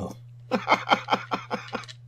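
A man laughing: a quick run of about eight short "ha" pulses, over a steady low hum.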